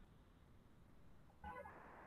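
Near silence: a faint low rumble of background noise on the call audio.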